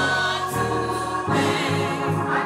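Gospel choir singing a worship song with live keyboard and bass accompaniment, sustained sung notes over a moving bass line.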